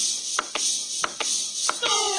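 Sharp clicks about two a second over a steady hiss, with music starting near the end.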